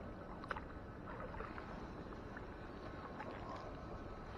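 Faint water sloshing and dripping as a magnet-fishing rope is hauled up out of canal water and the magnet, with a rusty hacksaw frame stuck to it, is drawn to the surface. A sharp click about half a second in and a few small ticks later.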